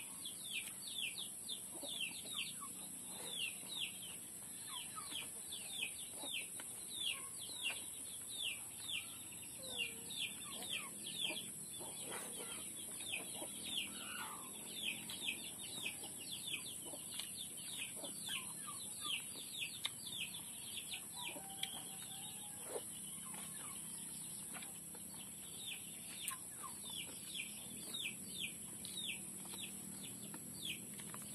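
Chicks peeping: a quick run of short chirps, each falling in pitch, several a second, over a steady high hiss.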